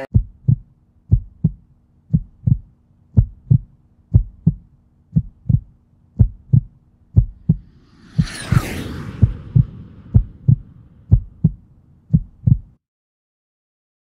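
Heartbeat sound effect: a double thump about once a second over a low steady hum, with a whoosh sweeping through just past the middle; it cuts off suddenly near the end.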